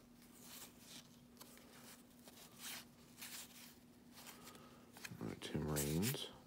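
Paper baseball cards being flipped through and slid against one another in the hands: light, irregular scratchy rustles of card stock. A short hummed vocal sound comes near the end.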